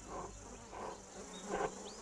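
Faint steady buzzing of insects, with a few soft short puffs of sound under it.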